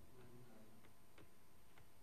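Near silence with three faint, short clicks in the second half.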